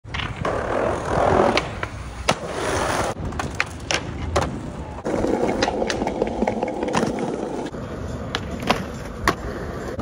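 Skateboards rolling on concrete, with sharp clacks of boards hitting the ground throughout. In the middle, a board scrapes along a ledge in a slide.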